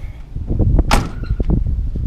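A classic Chevrolet Camaro's door shut with one sharp slam about a second in, over a low rumble.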